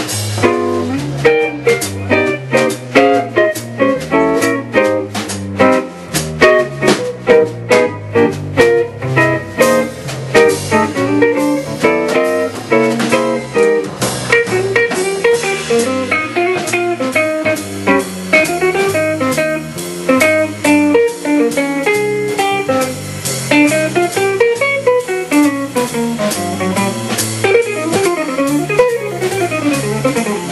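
Jazz guitar trio playing: a Gibson L5 hollow-body electric guitar plays single-note lines over a walking electric bass guitar and a drum kit keeping time.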